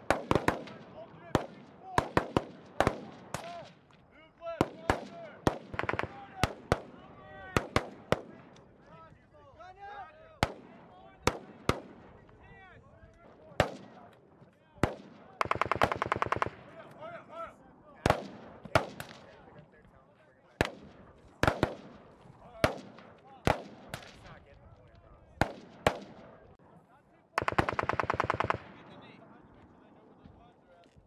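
Live small-arms fire: scattered single shots and short strings of shots throughout, with two long rapid automatic bursts of about a second and a half each, one in the middle and one near the end, typical of a machine gun.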